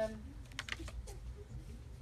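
A woman's brief 'um' close to a handheld microphone, then a pause broken by a few short, faint clicks about half a second in, over low room hum.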